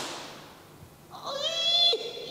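A man's high-pitched, drawn-out squeal of dismay, held for about a second, starting a little past halfway in.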